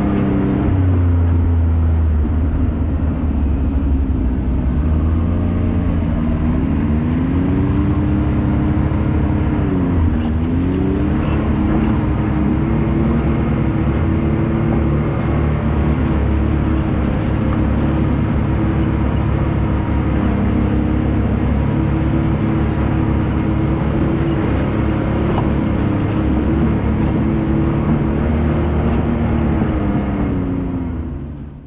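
Can-Am Maverick X3 side-by-side's turbocharged three-cylinder engine running under way at fairly steady revs, its pitch dipping and climbing again a few times between about six and eleven seconds in as the throttle is let off and reapplied.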